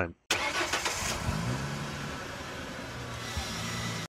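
Car engine sound effect. It starts abruptly with a rattly first second, then its pitch rises and settles into a steady run.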